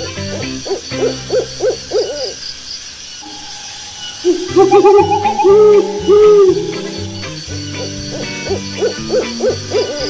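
Owl hooting: quick runs of short hoots that rise and fall in pitch, with a louder group of longer hoots in the middle, over soft background music.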